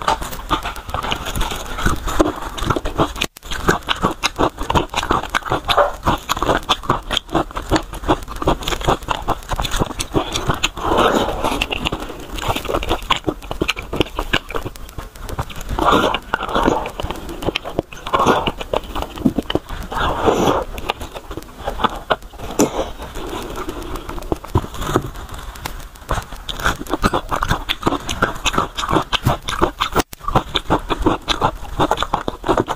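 Close-miked eating of bone marrow: continuous wet chewing, lip-smacking and sucking, with dense small clicks and a few louder bursts around the middle.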